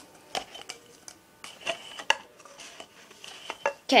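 Light taps and clicks of white disposable cups being pulled apart from a stack and set down mouth-down on a table, several short knocks in a row.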